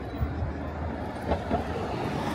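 City street ambience: a steady low traffic rumble, with a few short knocks.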